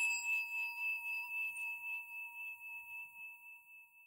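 A singing bowl rings out after a single strike, its tone wavering in loudness as it slowly fades.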